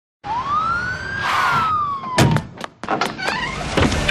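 Police siren sound effect: one wail that rises over about a second and then falls slowly, with a short burst of hiss at its peak. A run of sharp clicks and knocks follows in the second half.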